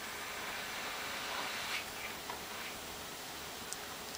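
Steady faint hiss of room noise, with no distinct event.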